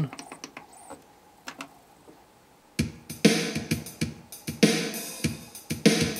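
A few faint clicks as the skip button steps the paused Yorx CD Pal CD player forward to track seven. About three seconds in, music with a strong, regular beat starts playing from the disc.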